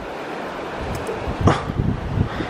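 Steady rush of shallow river water around a hand held in the current, with wind buffeting the microphone. One short, sharper burst about one and a half seconds in.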